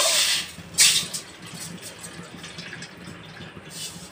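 Water poured from a glass bowl into a stainless steel bowl. It splashes loudly twice in the first second, then runs on as a quieter, steady pour.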